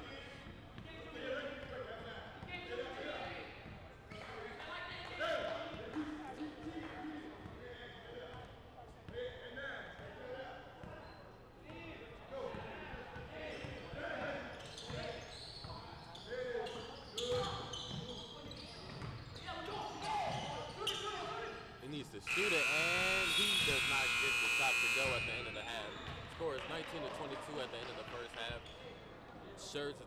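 A basketball being dribbled on a gym's hardwood floor, with players' voices echoing in the hall. About 22 seconds in, the scoreboard horn sounds one steady, loud blast lasting about three seconds, ending the first half.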